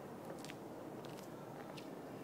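Quiet, steady outdoor background hiss with a few faint, short high ticks scattered through it.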